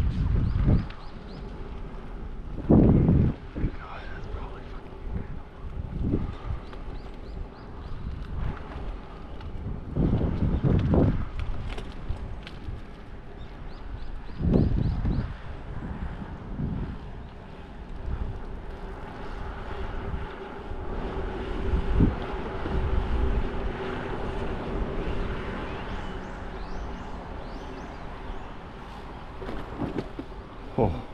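Wind buffeting the action camera's microphone in repeated low gusts, over steady road and traffic noise.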